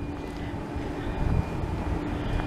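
Outdoor street ambience: a low rumble of wind on the microphone and distant traffic, with a faint steady hum.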